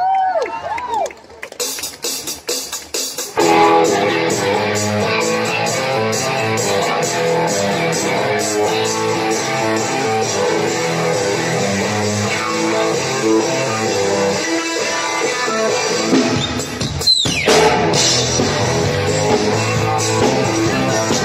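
A live rock band with electric guitar and drum kit starting a song. A few scattered notes and hits lead in, then about three and a half seconds in the full band comes in and plays on steadily. Near the end there is one quick falling pitch glide.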